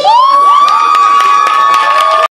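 A voice through the microphone and speakers holding one long, high shout that slides up at the start and then stays level, with a few sharp clicks over it.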